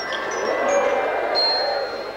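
High, bell-like chime notes ringing, several held for a second or more, over a mass of voices from the theatre audience.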